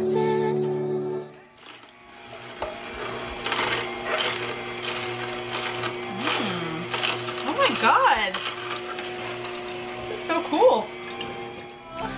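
Omega Cold Press 365 slow masticating juicer running, its motor a steady hum, while its auger crushes celery stalks with irregular crunching.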